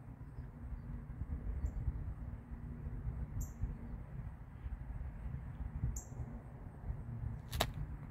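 Low, steady outdoor background rumble with two brief high bird chirps a few seconds apart, and a single sharp click near the end.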